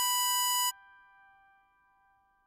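Harmonica holding a single draw note on hole 7 (B5), which cuts off sharply about two-thirds of a second in. A faint, fading ring of the same note trails away to near silence.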